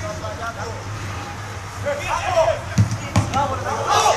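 Football players shouting on the pitch. Two dull thuds of the ball being struck come close together around the three-second mark, during a goalmouth scramble.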